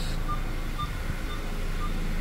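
Nissan Rogue Sport's four-cylinder engine idling steadily, with a faint short beep repeating about twice a second.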